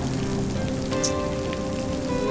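Steady rain falling, with soft background music whose sustained notes come in about half a second in.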